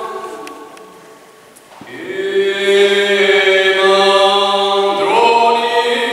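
Unaccompanied male voices singing a Corsican hymn in close harmony. A phrase dies away in the church's reverberation, and after a short pause the voices come in again about two seconds in on long held notes over a low sustained note, moving to a new chord near the end.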